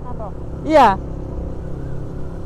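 Yamaha Scorpio 225 cc single-cylinder motorcycle engines running at a steady cruise, a low even rumble.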